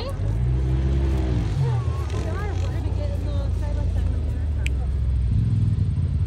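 Side-by-side UTV engine running and revving, its pitch rising and falling, getting louder about five seconds in.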